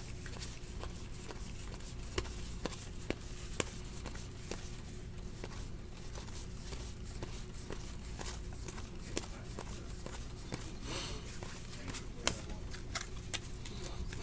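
Stack of football trading cards being thumbed through by hand, card sliding past card, giving irregular soft clicks and ticks of card stock.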